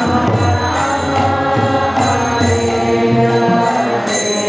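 Devotional kirtan: a mantra chanted over sustained instrument tones, with hand cymbals striking a steady beat about twice a second.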